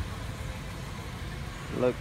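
1996 Chevrolet Impala SS's 5.7-litre LT1 V8 idling quietly as a steady low rumble through its stock, all-original exhaust.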